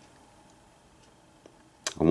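Quiet room tone with two faint ticks about a second apart, then a short sharp click near the end.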